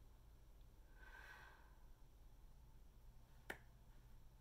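Near silence: a soft breath out about a second in, then a single short click near the end.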